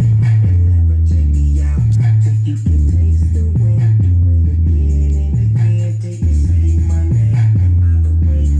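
Hip hop track played loudly through a homemade sealed MDF box with two 8-inch Jaycar Response subwoofers, plus a speaker, in a sound test. Deep bass notes are held about a second each and change in a repeating pattern.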